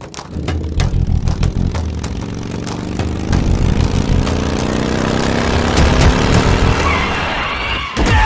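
Motorcycle engine revving hard, its pitch climbing slowly over several seconds.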